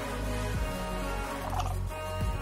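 Background music with held tones and a brief warbling figure about one and a half seconds in.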